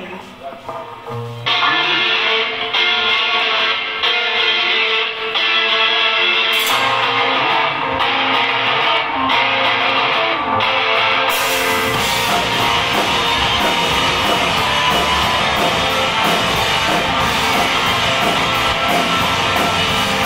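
Rock band playing live: electric guitars open the song alone with a steady, pulsing intro, and about twelve seconds in the drums and full band come in.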